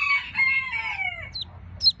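A chicken's drawn-out call that falls in pitch at its end, then two short, very high peeps near the end from a newly hatched chick.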